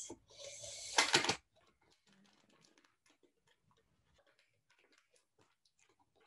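Plastic packaging and tape being handled while a mould is assembled: a brief hiss and crinkle, loudest about a second in, then near silence from about a second and a half on.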